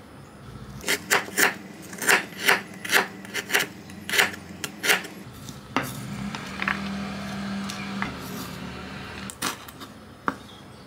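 Kitchen knife cutting through firm, fibrous galangal on a wooden cutting board: about a dozen crisp, rasping cuts, two or three a second, then the blade scraping across the board as the slices are gathered.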